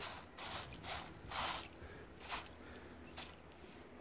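Fingers raking small gravel stones across a six-millimetre wire mesh screen, giving several short, faint scratchy rattles at irregular intervals as the coarse fraction left after classifying is searched for gold.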